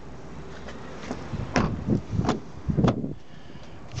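Car doors on a Volvo V50 being handled: a quick run of knocks and clunks in the middle, the last and deepest about three seconds in.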